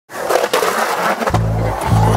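Skateboard wheels rolling over a concrete skatepark bowl, heard together with a song whose deep bass notes come in about one and a half seconds in.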